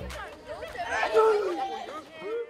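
Several children's voices chattering and calling out at once, loudest about a second in.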